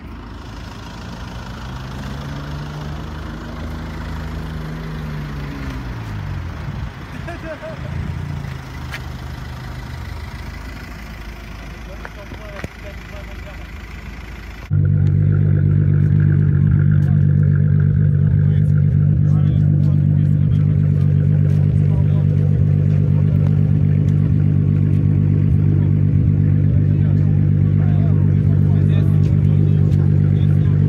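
Car engine heard from a moving car on a winding road, its pitch rising and falling as it speeds up and eases off. About halfway in, it cuts to a much louder, steady close-up engine drone, a car idling at a meet of modified cars.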